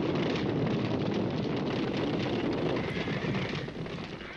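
Many horses galloping together: a dense, steady rumble of hoofbeats from a film soundtrack.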